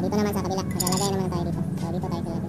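A voice talking over a steady low hum, with a light metallic clink as the metal lid comes off a tin of PVC solvent cement about a second in.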